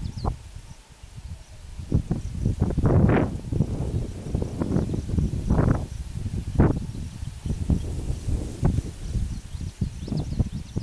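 Wind buffeting the microphone in uneven gusts: a low rumble with sharper rushes, loudest about three seconds in and again near six and a half seconds.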